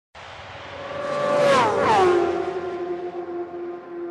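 Motorcycle engines at high revs passing close by: the pitch drops sharply twice, about a second and a half and two seconds in, as two bikes go past, then a single steady engine note fades away.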